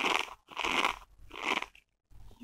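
Long fingernails scratching the rough woven fabric of a clutch purse in quick, repeated strokes, about two to three a second, each a short scratchy rasp.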